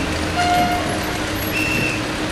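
Low, steady engine hum of an Alfa Romeo 159 police car rolling slowly at walking pace, over steady street background noise, with a few brief high tones in the first half and near the end.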